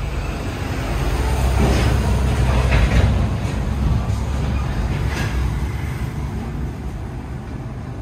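A low, steady rumble that swells to a peak about three seconds in and then slowly eases off, under a faint hiss.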